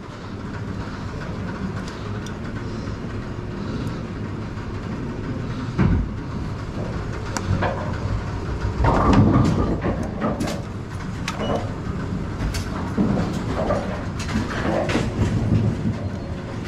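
Steady rumble and clatter of bowling pinsetter machinery, with scattered sharp metallic clicks and knocks from hand work on the pinsetter's gearbox stop collar. A louder burst of clatter comes about nine seconds in.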